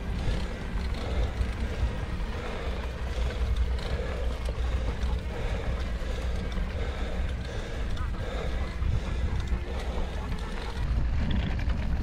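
Wind buffeting a bike-mounted action camera's microphone as a steady low rumble, over the noise of fat tyres rolling on a dirt road during a climb.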